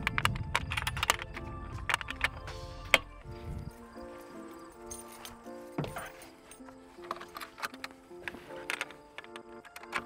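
Background music with held notes and sharp percussive clicks, over a low rumble that cuts off suddenly a little under four seconds in.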